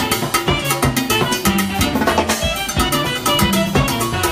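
Cumbia band playing live and loud: a steady drum-kit beat over a bass line and sustained pitched instrument notes.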